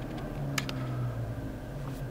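Dodge Challenger SXT's 3.6-litre V6 idling, heard from inside the cabin as a steady low hum while the revs settle back toward idle after being raised. Two faint clicks about half a second in.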